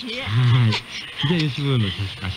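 Only speech: hosts talking in Japanese on an off-air radio broadcast recorded onto cassette tape, with poor reception.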